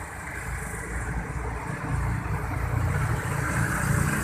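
Road traffic: a motor vehicle's engine rumble growing louder over the first two seconds as it approaches, then holding steady.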